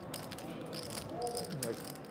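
Clay poker chips clicking against each other in quick, irregular taps as a player handles a chip stack at the table.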